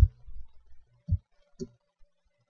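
Three short clicks of a computer mouse button, the last two about half a second apart, picked up by a laptop's built-in microphone.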